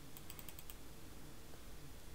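Faint clicking from a computer keyboard and mouse: a quick cluster of clicks in the first second, then a few scattered ones.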